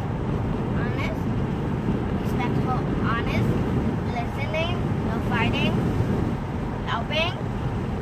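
Steady low road and engine rumble heard from inside a moving car's cabin, with faint snatches of a voice over it.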